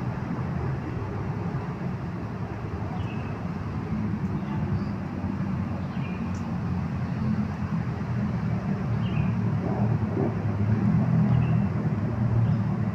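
A steady low outdoor rumble, growing slightly louder toward the end, with a short high chirp about every three seconds.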